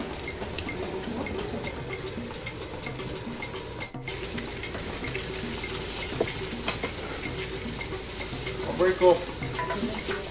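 Eggs sizzling in a hot frying pan in a steady hiss, with light scraping and clicking of a utensil against the pan as the eggs are lifted. A short voice is heard near the end.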